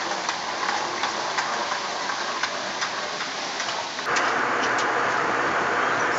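Airport moving walkway with a child's small rolling suitcase: a steady hiss with many small irregular clicks. About four seconds in it cuts to the smoother, steady hiss of an airliner cabin in flight.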